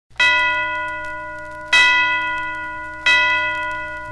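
A bell struck three times, about one and a half seconds apart, each strike ringing out and fading, as the opening chimes of a Christmas song's recording.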